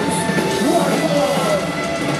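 Live metalcore concert in a loud club during a lull in the song: shouting voices over a few held, steady electronic tones, with the band's full playing pulled back.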